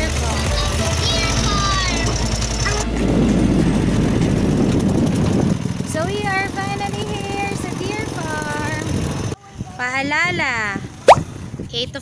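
Engine and road noise of a small vehicle during a ride, with voices over it. Near the end the sound cuts abruptly to voices and a single sharp, loud click.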